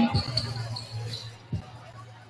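Basketballs bouncing on a hardwood gym floor during warmup dribbling: two low thumps about a second and a half apart.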